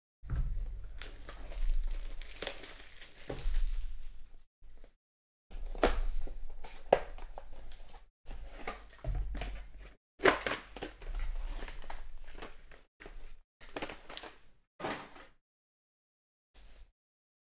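Packaging being handled: a small cardboard box opened and a foil bag holding a baseball crinkling and rustling as it is pulled out, in irregular bursts with short pauses.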